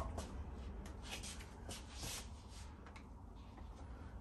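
Faint rustling and rubbing with light irregular clicks as electrical cords are handled and pulled out from behind a TV on a swing-arm mount.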